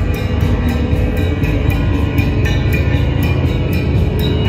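Live ambient-industrial music: a dense low electronic drone with a steady pulse of hissy ticks, about three or four a second, over it.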